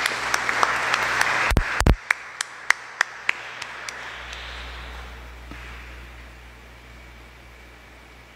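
Congregation applauding: dense clapping for about two seconds that thins to scattered single claps and dies away about halfway through. Two dull thumps come near the end of the densest clapping.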